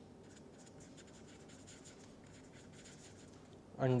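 Marker pen writing on paper, a run of faint, short strokes. A man says one word near the end.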